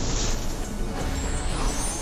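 Cinematic sound-effect rumble: a dense, steady low roar with whooshes sweeping over it, as in a dramatic title transition.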